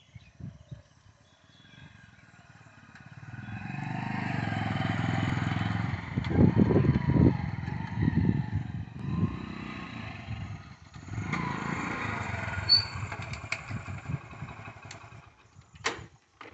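Hero Honda Splendor's single-cylinder four-stroke engine running as the motorcycle is ridden past on its test run after a clutch plate repair. It grows louder about three seconds in and revs up and down unevenly. It drops briefly around the middle, then fades near the end.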